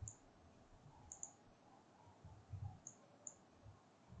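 A few faint computer mouse clicks over near silence: one at the start, one about a second in, and two in quick succession near three seconds.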